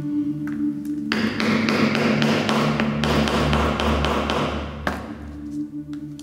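Ambient music with sustained tones. Over it, a rapid run of light taps with a hiss starts about a second in and stops near five seconds: a stitching chisel being tapped through leather.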